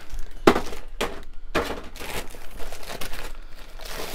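Clear plastic bag crinkling and crackling in irregular bursts as a pleather-covered Necronomicon prop book is handled and worked out of it.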